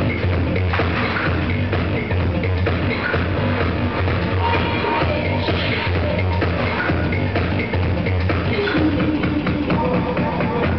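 Electronic dance music with a heavy bass, played from a DJ's laptop and mixer.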